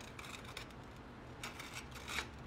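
Faint scraping and a few light taps of a straight edge against a ground-flat concrete block face while it is checked for flush.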